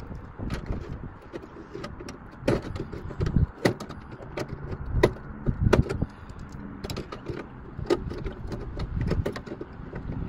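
Hand pliers working on metal inside a scrapped car's door: irregular sharp clicks and clanks of metal on metal, over a low rumble.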